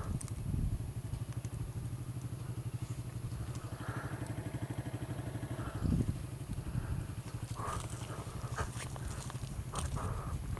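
Honda CRF dirt bike's single-cylinder four-stroke engine running steadily at low revs as the bike rolls along a gravel track, with a few knocks from bumps in the track near the end.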